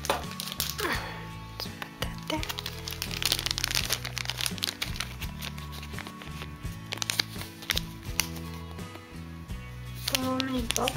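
Clear plastic bag crinkling and crackling in the hands, in many quick sharp clicks, over background music with sustained low notes.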